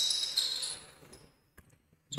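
Basketball court sounds in a gym: high sneaker squeaks on the court that fade away over the first second, then near silence with a couple of faint ticks.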